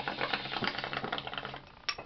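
Water bubbling in a glass bong as smoke is pulled through it while a lighter flame is held to the bowl. It trails off shortly before the end, when a short sharp sound is heard.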